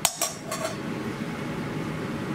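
A long metal slotted spoon clinking against a stainless steel mixing bowl, with two quick clinks right at the start, then a steady background hum.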